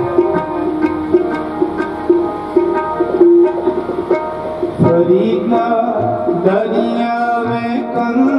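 Sikh devotional kirtan: tabla playing under a steady held melody, with a voice starting to sing about five seconds in.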